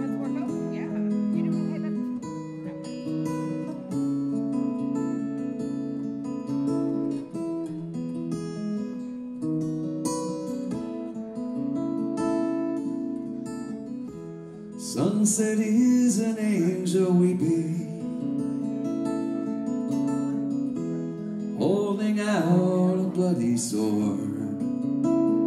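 Solo electric guitar playing a slow instrumental song intro of picked, ringing chords. There are two louder, busier passages, about fifteen seconds in and again near the end.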